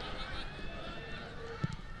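Faint stadium ambience with distant voices shouting, and a single dull thump of a football struck for a free-kick cross near the end.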